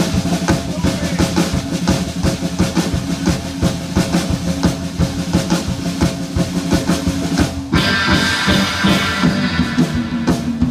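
A band playing a song led by a busy drum kit beat with bass drum and snare. About eight seconds in, a brighter, fuller sustained sound joins the music.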